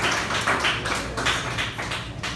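Scattered audience hand claps as the applause after a song dies away, growing sparser and quieter.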